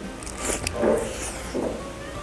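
A person biting into fried chicken held in a bun and chewing: a few short crunches about half a second and one second in.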